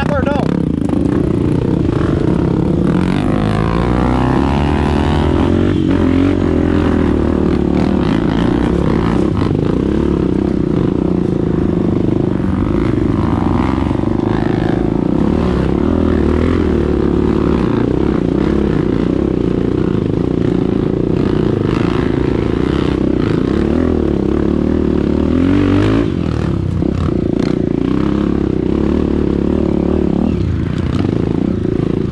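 Dirt bike engines running at low trail speed, the note rising and falling with the throttle.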